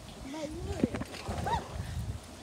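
Short, wordless vocal sounds from a child, several brief rising-and-falling calls, over low irregular knocks and rumbling from the phone being handled and moved about.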